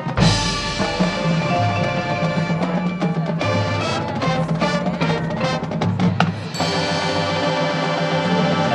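High school marching band playing live: brass and winds sounding full sustained chords over front-ensemble percussion. A loud accented hit comes just after the start, a run of percussion strikes follows in the middle, and held chords return near the end.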